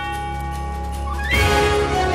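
Intro theme music with held chords; about a second and a half in, a short rising sweep leads into a louder hit.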